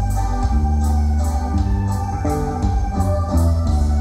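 Traditional waltz music played on an electronic organ-style keyboard, amplified loud, with sustained chords that change every half-second or so over a heavy bass.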